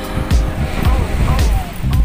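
Background music with a heavy, steady bass beat and a sliding melody.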